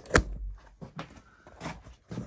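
Camera being unclipped from its tripod mount and picked up: one sharp click near the start, followed by a short low handling rumble and a few lighter taps.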